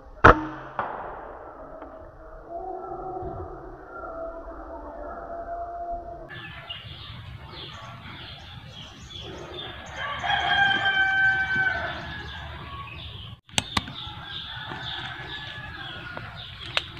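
An air rifle shot at a spotted dove: one sharp crack right at the start, with a smaller knock half a second after it. A rooster crows for about two seconds near the middle, and another pair of sharp shot-like cracks comes a couple of seconds before the end.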